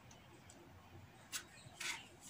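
A marking tool rubbing on fabric: two short scratchy strokes, the first about a second and a half in and the second just before the end, over faint room tone.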